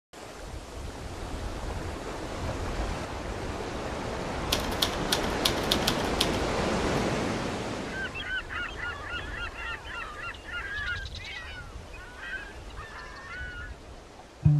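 Waves breaking and washing up a beach, swelling through the first half with a quick run of sharp clicks in the middle. From about halfway, a flock of birds calls over the quieter surf: many short calls that rise and fall.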